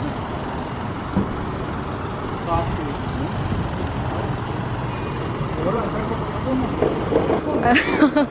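Steady low rumble of motor-vehicle noise in an open parking lot, with a light knock about a second in and men's voices talking briefly in the background.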